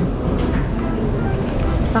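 Busy eatery background: a steady low rumble with faint voices in the background.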